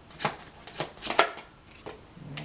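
A tarot deck being shuffled by hand: quick slaps of cards, a run of strokes that slows and thins out, the last coming near the end.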